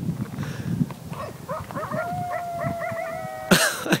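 A pack of coyotes howling and yipping together: short yips build into a long held howl with quick rising yips over it. Near the end there is a sudden brief burst of loud noise.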